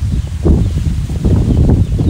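Wind buffeting the microphone outdoors: a loud, uneven low rumble, with leaves rustling and faint high bird chirps above it.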